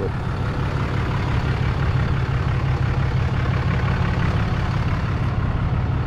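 Steady road and engine noise inside a vehicle's cabin while driving, an even low rumble.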